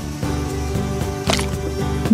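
Background music with a steady beat and held notes, with one short, sharp sound a little after halfway.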